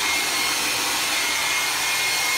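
Pet blow dryer running steadily, its hose nozzle blowing air into a wet Saint Bernard's coat to dry it: an even rush of air with a thin, steady high whine.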